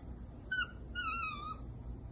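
Dachshund puppy whimpering: a short high whine about half a second in, then a longer, slightly wavering one.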